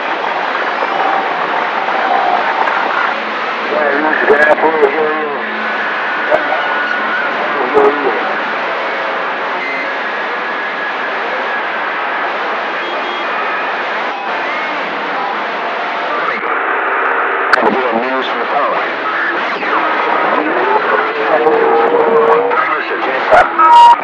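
Radio receiver hissing with static over faint, garbled voices of distant stations and a few steady and gliding heterodyne whistles, the sound narrowed as through a radio's speaker.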